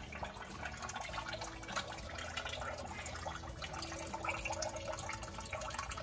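Washing-machine grey water draining from a PVC pipe elbow into the mesh filter basket of a rain barrel, trickling and splashing steadily.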